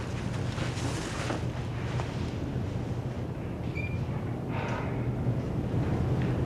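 Steady hiss and low hum from the aged soundtrack of an old television recording, with a few faint brief noises about a second in and near five seconds.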